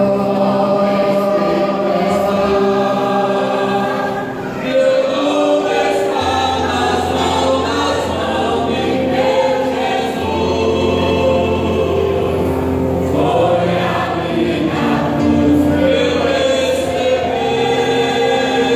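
Mixed choir of men and women singing together in held chords that shift every few seconds, with a woman's voice amplified through a microphone.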